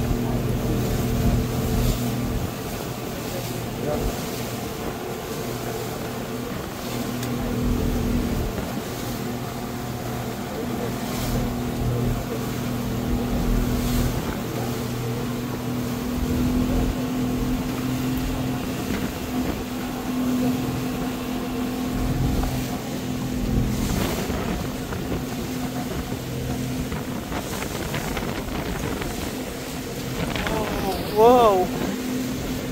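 Passenger speedboat's engine running at a steady pitch under way, with wind and rushing water against the hull.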